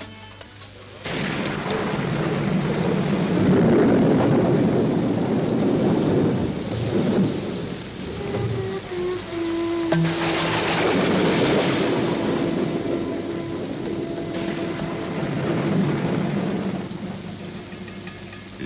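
Thunderstorm sound effect: heavy rain with long rolls of thunder, starting suddenly about a second in and swelling again about ten seconds in. A few soft sustained music notes sound beneath it.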